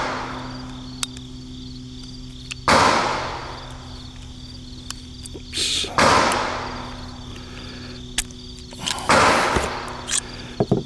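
Three loud gunshots about three seconds apart, each with a long echoing tail, from other shooters at the range. Between them a steady buzz of insects carries on underneath.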